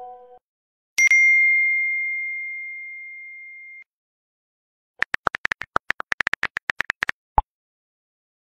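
A single bright phone notification ding that rings out and fades over about three seconds, then, about five seconds in, a fast run of smartphone keyboard clicks with one lower-pitched click near the end.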